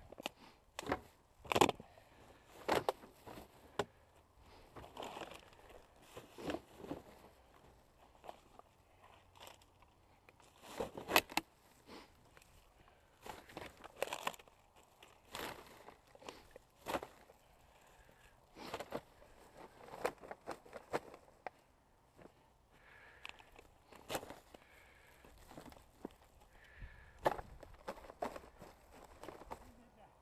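Footsteps crunching through dry grass and leaves, mixed with plastic litter and a plastic rubbish bag rustling as rubbish is picked up. Irregular sharp crackles, loudest about a second and a half in and again around eleven seconds.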